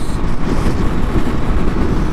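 Steady wind noise rushing over the microphone, mixed with engine and road noise, from a Yamaha FZ-09 motorcycle cruising at highway speed.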